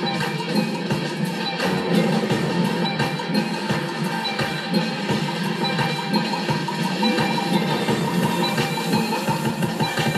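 DJ mix of music with a beat, mixed live across four decks on Novation Twitch and Pioneer DDJ-SR controllers running Serato. It plays continuously and loud, with rough sound quality.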